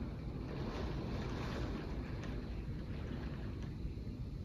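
Fierce hurricane wind and rain beating against a window: a steady low rush that swells into a stronger gust about a second in.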